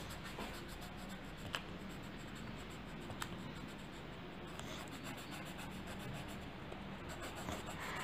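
Coloured pencil rubbing back and forth on paper in faint steady strokes, with a couple of light clicks.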